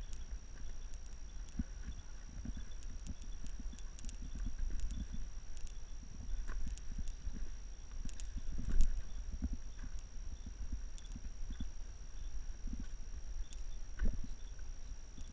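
Footsteps and scrambling on rock: irregular knocks and scuffs, the loudest about nine seconds in, over a low rumble and a faint steady high tone.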